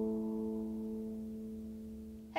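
Lever harp chord ringing out after being plucked: a few held notes slowly fade away with no new notes played.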